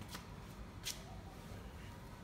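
Two brief rustling noises about three-quarters of a second apart, the second louder, over a low steady background hum.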